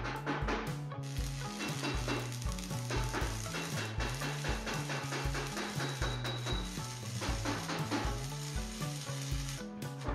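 Electric arc welding on a steel-plate stove body: a steady crackling sizzle that starts about a second in and stops just before the end. Under it runs background music with a steady drum beat and a stepping bass line.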